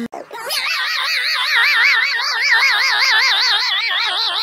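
A high-pitched, wavering vocal wail, its pitch wobbling quickly and evenly up and down. It starts about half a second in and is held without a break.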